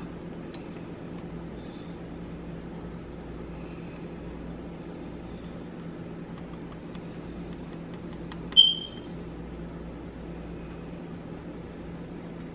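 Steady low mechanical hum, like a kitchen appliance running, with one brief high-pitched squeak about eight and a half seconds in.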